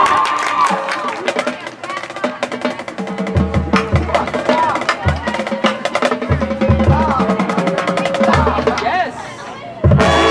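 Marching band playing, with the percussion section to the fore: sharp tapped clicks, then deep tuned bass drum hits from about three seconds in, recurring every second or two. It drops back briefly near the end before a loud full-band entrance.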